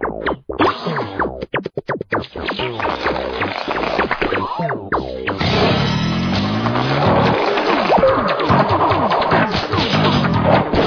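Animated cartoon soundtrack: music with many sliding, bending pitches and comic sound effects, choppy with brief dropouts at first, then denser and louder from about halfway through.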